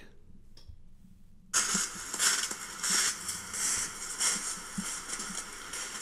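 Trail-camera video's own soundtrack played back through computer speakers: a loud, uneven crackling rustle that starts suddenly about one and a half seconds in, the noise of the filmed creature moving through snow.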